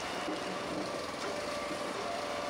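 Blacks Creek firewood processor's engine running steadily, with the machine and conveyor belt going.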